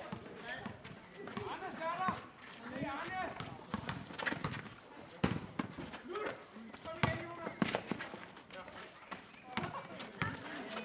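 Live sound of a pick-up basketball game on an outdoor paved court: players' voices calling out, and a basketball bouncing on the paving in sharp, irregular knocks, the loudest a few seconds past the middle.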